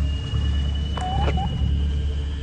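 Eerie ambient soundtrack: a deep steady drone under a sustained high tone, with a short wavering, gliding pitch sweep about a second in.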